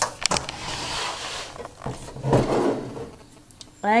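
Handling noise of a hand-held camera being turned and moved: a few sharp clicks at the start, then rustling and rubbing for about three seconds.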